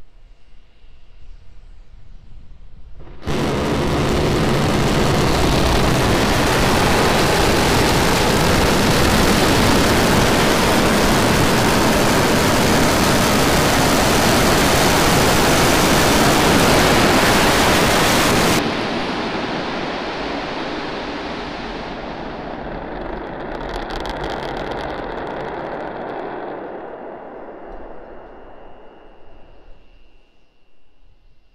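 Starship prototype's Raptor rocket engines firing for the flip and landing burn: a loud rushing noise starts suddenly a few seconds in, holds steady for about fifteen seconds, then cuts off abruptly at engine shutdown on the pad. A lower rumble with some crackle follows and fades away.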